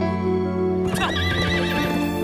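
A horse whinnies about a second in, a wavering call lasting under a second, over steady background music.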